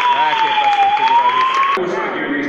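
A siren wailing with a slow rise and fall, about one full sweep every two seconds, over many voices shouting in a crowded hall. It cuts off abruptly near the end, giving way to crowd noise and applause.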